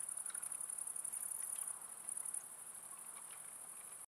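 Crickets chirping in a steady, high-pitched, fast-pulsing chorus, with a few faint clicks. It cuts off suddenly at the very end.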